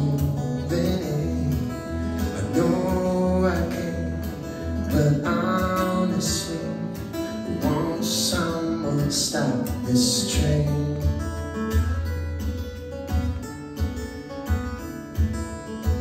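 Solo acoustic guitar played fingerstyle, with a steady low bass pulse under chords and melody notes.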